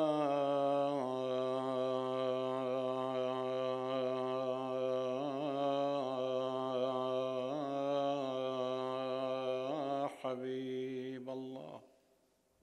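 A man chanting a religious recitation, holding one long drawn-out note with small wavering turns in pitch; the voice breaks briefly about ten seconds in, then trails off.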